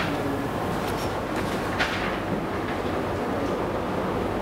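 Steady background rumble of room noise, with a few faint ticks over it.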